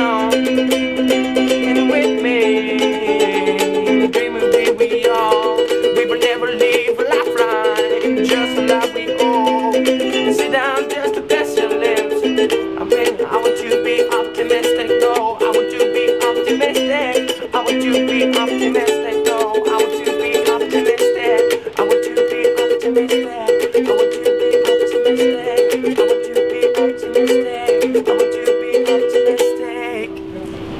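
Ukulele played in a steady, repeating chord pattern, with a wordless sung melody rising and falling over it in places.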